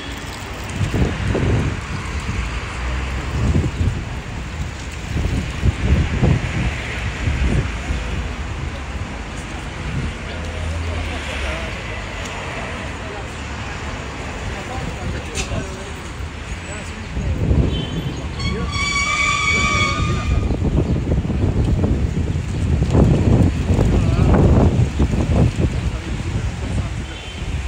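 City street ambience with traffic rumbling. Past the middle, a vehicle horn sounds once for about a second and a half.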